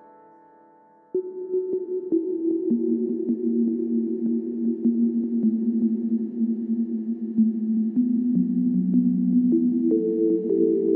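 Electronic music: a held synth note fades away, then about a second in low sustained synth tones come in suddenly, with fast faint clicks over them and the notes shifting every few seconds.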